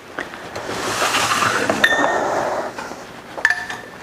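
Small glass bottle and jars clinking together on a tray as it is picked up and moved: two light ringing chinks, one about two seconds in and another near the end, over a soft rustle.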